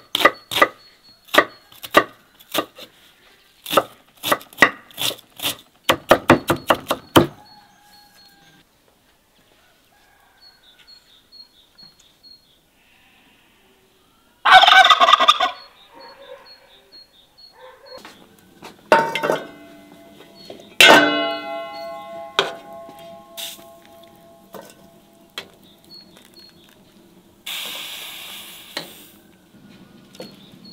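A kitchen knife chopping an onion on a wooden chopping block, a steady run of knocks that speeds up just before stopping. After a pause, a domestic turkey gobbles once, loudly, for about a second and a half. Then a few metal clinks that ring on, a spoon knocking against an enamel bowl, and a short scrape near the end.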